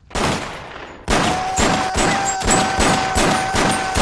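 Film soundtrack gunfire: a blast at the start that fades, then about a second in a string of rapid gunshots, roughly four a second, over a steady high tone.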